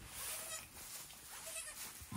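A goat giving two short, faint bleats, about half a second in and again near the end.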